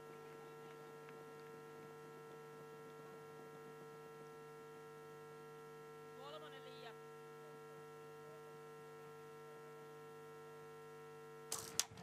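Faint steady electrical mains hum, a buzz made of many even overtones that never changes. A faint voice is heard briefly about six seconds in.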